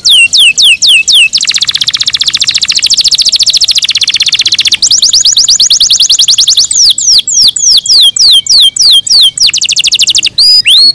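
Domestic canary singing: runs of high, quickly repeated downward-sweeping whistled notes, then a very fast trill of about three seconds, then further runs of sweeping notes at varying speeds.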